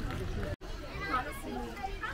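Children's voices and shouts from kids playing in a swimming pool, several at once with no single voice standing out. The sound drops out abruptly for an instant about half a second in.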